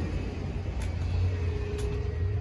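Steady low rumble of ambient background noise, with a faint steady hum and a few light clicks, while walking through a shop's glass doorway.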